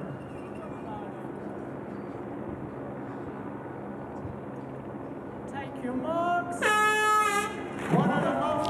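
Quiet outdoor ambience, then near the end a single horn blast of about a second, one steady tone: the start horn sending the swimmers off.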